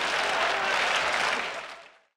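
Theatre audience applauding after a comedy punchline, fading out near the end.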